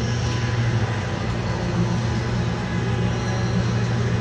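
A steady low mechanical hum with an even hiss over it, unchanging throughout.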